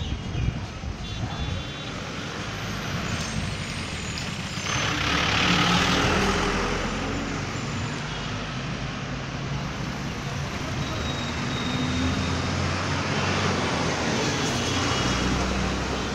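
Street traffic, with motorcycle and other vehicle engines running steadily. About five seconds in, a louder vehicle passes, then fades over the next couple of seconds.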